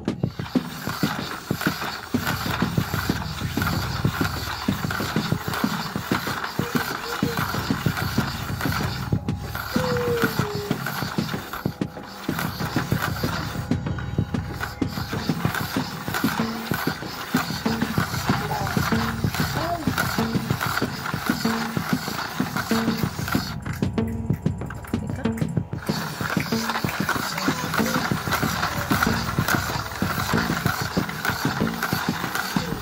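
Plastic gears and turntable of a ThinkFun HypnoGraph drawing machine being hand-cranked, making a fast, continuous clicking rattle.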